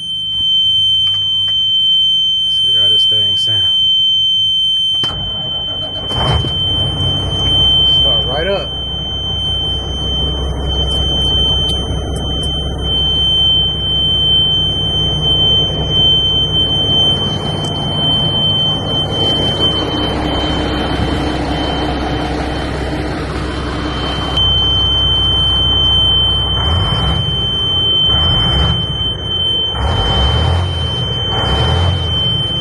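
A steady high-pitched dash warning buzzer sounds throughout in the cab of an old Mack RD dump truck. About five seconds in, its Mack E7 diesel starts with a sudden low rumble and keeps running, the buzzer still going over it.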